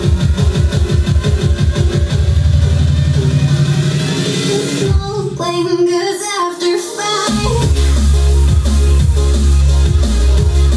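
Loud electronic dance music played through homemade tower speakers with Dayton Audio drivers, powered by a small Kicker amplifier board. A fast pulsing beat with deep bass gives way to a short melodic break about five seconds in, then heavy, sustained bass drops in around seven seconds.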